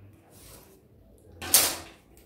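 A French curve ruler slid off the fabric and set down on a wooden table: one short, loud scrape about one and a half seconds in, after a faint scratch.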